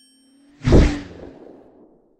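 Logo-reveal sound effect: a whoosh that lands in a deep boom a little over half a second in, then fades away over about a second.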